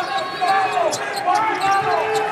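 A basketball being dribbled on a hardwood court, with voices in the arena behind it.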